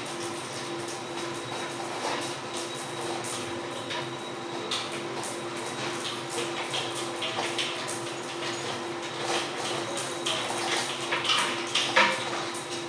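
Scattered scrapes and light knocks of plumbing parts being handled under a kitchen sink while a clogged drain is cleared, over a steady background hum.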